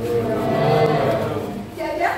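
A class of students answering together in one long, drawn-out chorus of voices, louder than the talk around it.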